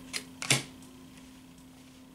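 Two short clicks of tarot cards being handled and set down, the second and louder one about half a second in, then quiet room tone with a faint steady hum.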